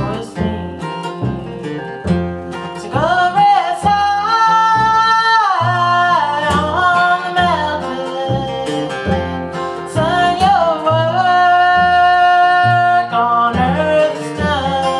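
Acoustic guitar and plucked upright bass accompanying a woman singing a slow country ballad, with long held notes.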